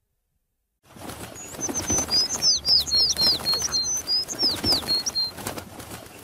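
Sound effect of small birds tweeting and wings flapping, starting about a second in: a fast flutter of rustling clicks under a string of short, high chirps that fades near the end.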